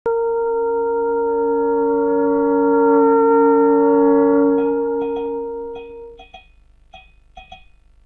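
Song intro: a long, steady drone note with overtones, like a singing bowl, that fades out about six seconds in. Small bells begin tinkling in short strokes, often paired, about halfway through and carry on after the drone dies away.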